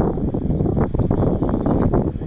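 Wind buffeting the microphone: a loud, uneven rumble in gusts.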